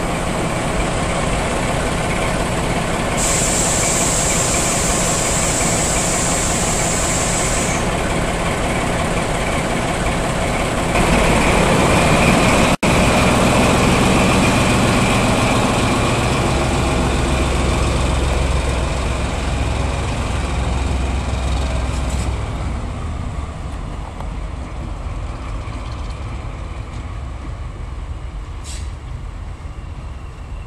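Diesel locomotive engines running loudly at close range, with a steady hiss for a few seconds early on. After a cut, a Class 14 diesel-hydraulic locomotive's Paxman engine runs with a heavier low rumble that fades as the locomotive moves away.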